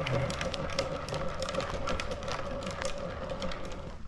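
Hard plastic wheels of a Big Wheel ride-on trike rolling fast over an asphalt path: a steady hum with a scatter of small clicks and ticks.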